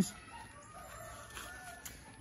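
Faint chicken calls, a few short clucks, over a quiet background.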